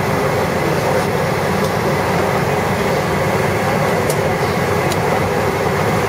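Steady rushing hum of an MD-11 airliner's cabin air conditioning with the aircraft parked at the gate, with a couple of faint clicks about four and five seconds in.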